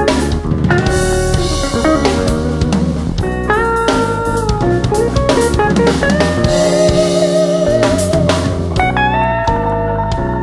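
Instrumental rock music: a lead guitar plays a melody over a drum kit, with one long held note sung out with vibrato from about two-thirds of the way in.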